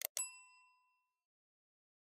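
A short click, then a second click that sets off a bright bell-like ding ringing out and fading within about a second: a subscribe-click and notification-bell sound effect.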